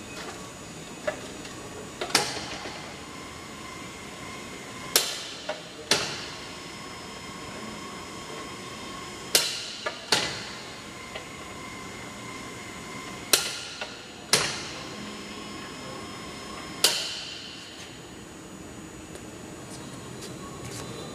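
Sharp knocks, about eight spread through the twenty seconds, some close together in pairs, each with a short ringing tail, plus a few lighter clicks, over a steady background hum.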